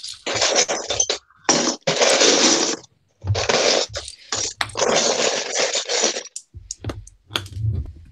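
Loose plastic Lego bricks clattering and scraping as a hand rakes and sifts through a pile of them, in four stretches of a second or two each with short pauses between.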